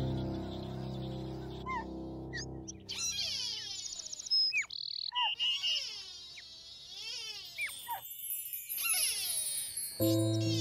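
A held musical chord fades out over the first few seconds. Then comes a dense run of high chirping, whistling calls that slide up and down in pitch, with brief pauses.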